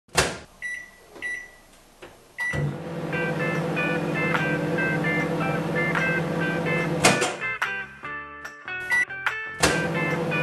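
A click and three high keypad beeps from a microwave oven, then the oven starting about two and a half seconds in and running with a steady hum. Background music plays over the hum, and a few sharp clicks come near the end.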